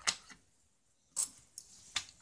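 Small watch repair tools being handled and set back into their fabric pouch: a sharp click near the start, a brief scrape about a second in, and another click near the end.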